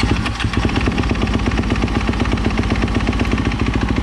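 Kawasaki KX dirt bike engine running at a steady idle just after being started, a rapid, even pulsing beat.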